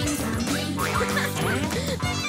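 Children's song music with a cartoon duck quacking several times over it.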